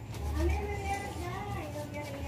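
A quiet, indistinct voice with a gliding pitch, over a low rumble.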